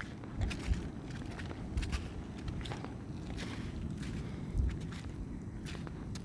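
Footsteps on sand, soft and irregular, over a low steady rumble.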